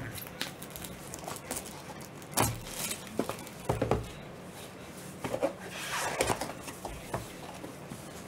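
Gloved hands handling small cardboard trading-card boxes: scattered light knocks and taps with rustling, including a longer stretch of rustling about six seconds in.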